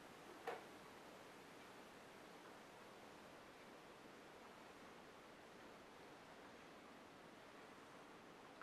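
Near silence: room tone, with one faint tick about half a second in.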